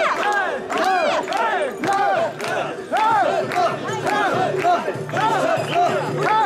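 Mikoshi carriers shouting a rhythmic carrying chant in unison, many voices overlapping in repeated rising-and-falling calls, about two a second, as they bear the portable shrine.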